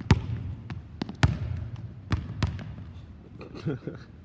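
A basketball dribbled on a hardwood gym floor: four sharp bounces at uneven intervals, the first the loudest.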